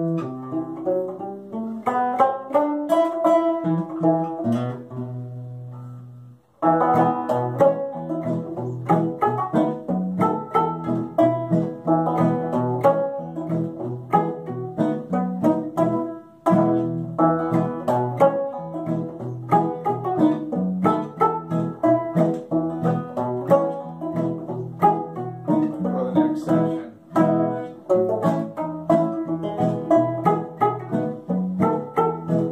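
Open-back banjo and small-bodied acoustic guitar playing a polka duet in a steady plucked rhythm. About six seconds in, a held chord fades to a brief stop, then the tune picks up again.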